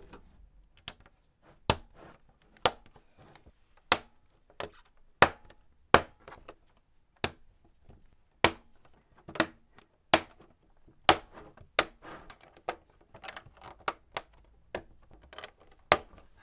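Plastic LEGO frame pieces being pressed and snapped onto the studs along the edge of a LEGO Art mosaic. They make a run of sharp, irregular clicks that come faster in the second half.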